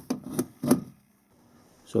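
Three short knocks and clicks within the first second, a hand tool being picked up and handled.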